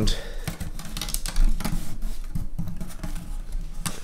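Binding tape being pulled off, torn and pressed onto the edge of a guitar body to clamp glued wooden binding: a run of irregular small crackles and clicks.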